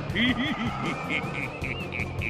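An old man laughing in short rising-and-falling bursts, voiced for an anime, over tense background music.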